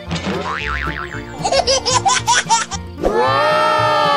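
Edited-in cartoon sound effects over a bouncy background music track: a wobbling boing as the plastic surprise egg pops open, then a short burst of baby giggles, then a long held note that rises and falls near the end.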